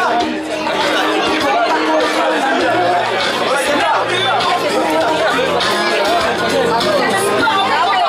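Several people talking at once, excited party chatter at close range, over background music.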